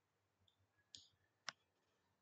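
Near silence broken by two faint clicks, about a second in and again half a second later, the second the sharper: computer mouse clicks while the whiteboard is worked.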